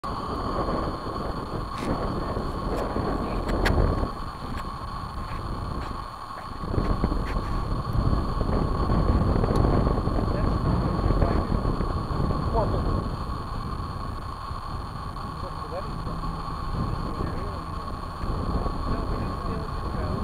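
Wind buffeting the microphone in uneven gusts, a low rumble that swells and eases, over a steady high electronic whine.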